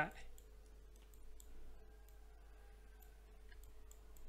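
Faint, scattered clicks of a computer mouse over a steady low hum.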